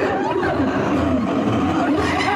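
Free-improvised voice-and-piano music: a woman's wordless voice gliding up and down in pitch into the microphone, over a low, steady rumble.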